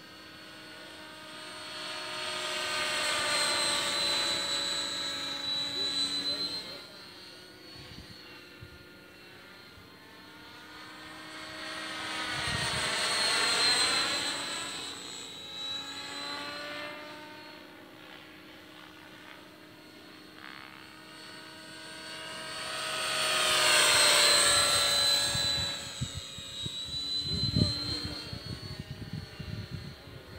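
Electric Outrage Fusion 50 RC helicopter in flight, its rotor and tail-rotor whine growing louder and fading away three times as it makes passes, the pitch bending with each pass.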